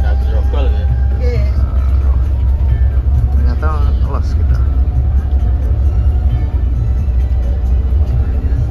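Steady deep rumble of an intercity coach's engine and road noise, heard inside the cabin while the bus rolls through a toll gate, with voices and music in the background.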